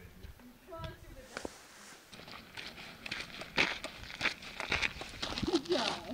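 Hikers' footsteps crunching on a sandy gravel trail, starting about two seconds in and growing louder, with a brief voice near the end.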